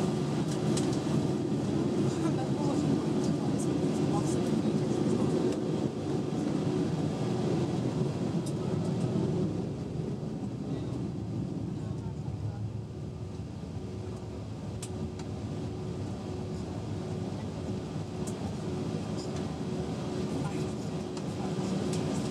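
Cabin noise inside an Airbus A320-232 taxiing with its IAE V2500 engines at idle: a steady low hum with a faint thin whine. It drops somewhat in the middle and builds again near the end.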